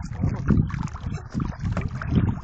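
A hooked redfish thrashing and splashing at the surface beside the boat, in irregular bursts. Wind rumbles on the microphone underneath.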